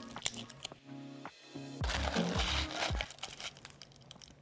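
Background music, with crinkling and crackling from about two seconds in as a cured resin tray is worked out of its mold.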